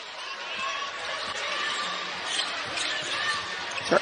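Basketball being dribbled on a hardwood arena court, with steady crowd noise in the background.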